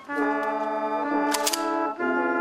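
A salute volley from Kalashnikov rifles: about one and a half seconds in, several shots go off close together in a ragged burst. Brass-band music with long held notes plays throughout.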